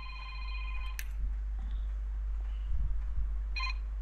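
An electronic tone made of several steady pitches sounds for about a second and is cut off by a click. A short repeat of the same tone comes near the end, over a constant low mains hum.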